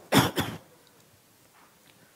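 A man coughs twice in quick succession, two short harsh bursts in the first half-second, followed by quiet.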